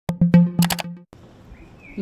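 A short musical logo ident: a quick run of struck, ringing notes over a held low note, lasting about a second. After it comes faint background noise, with a brief soft tone near the end.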